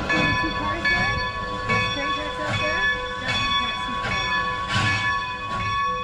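Steam locomotive's bell ringing at an even pace, struck a little faster than once a second, over the low rumble of the approaching train.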